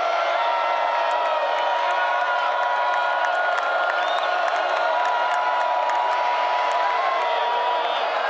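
Football stadium crowd: a steady din of many voices, with individual fans' held yells and whoops rising above it.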